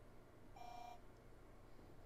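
A single short electronic beep from the TRS-80 Model 4's speaker, one steady tone about half a second long, starting about half a second in. It is the alert the terminal program sounds when a received XMODEM block fails its CRC check.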